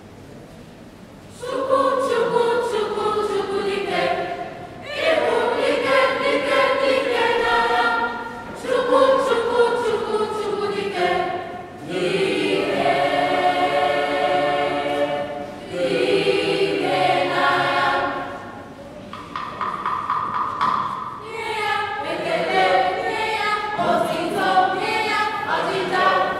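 Mixed school choir of teenage voices singing an Igbo song. The singing starts about a second and a half in and goes in phrases with short breaks between them.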